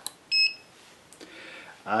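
Turnigy 9X radio-control transmitter running openTX giving a single short, high electronic beep as it powers up, just after a sharp click.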